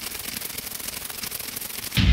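Dense crackling, static-like glitch noise made of many fast tiny clicks: the sound effect of a logo animation with scrambling text. A loud, bass-heavy hit comes in at the very end.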